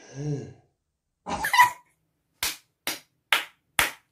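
A person sighs, gives a short voiced exclamation, then claps her hands four times, evenly, about half a second apart.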